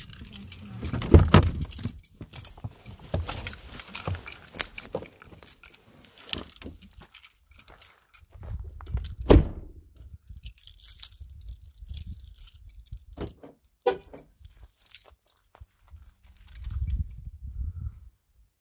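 Car keys jangling and rattling, with handling clicks and knocks as someone climbs out of a parked car. A car door shuts with one loud thud about nine seconds in.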